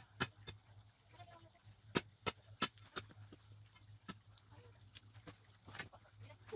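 Irregular sharp clinks, about ten in a few seconds, of a steel rock bar striking rock as a big rock is dug and pried out of the ground.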